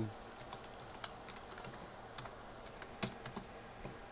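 Computer keyboard keys clicking as a password is typed: irregular keystrokes, with one louder click about three seconds in.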